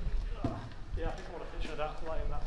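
Indistinct talking, with low rumbling handling noise and a single thud about half a second in.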